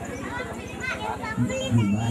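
Speech only: a man talking into a microphone, with high children's voices in the background.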